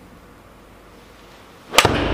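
A golf iron striking a ball off a hitting mat: one sharp, loud crack near the end.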